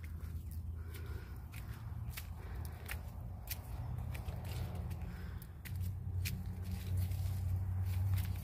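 Footsteps climbing concrete steps, roughly one a second, over a steady low rumble that grows louder near the end, with heavy breathing.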